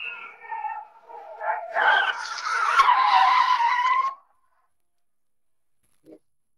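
Car tyres screeching as a car brakes hard to a stop, a squeal lasting about two seconds that cuts off sharply, led in by a softer sound.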